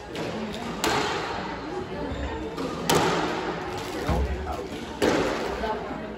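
Squash ball struck three times, about two seconds apart, each a sharp hit echoing around the court.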